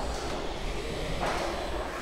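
Crown electric reach truck's hydraulics working as the loaded forks are lowered and the mast tilted back: a steady hiss over a low hum, swelling briefly a little past halfway.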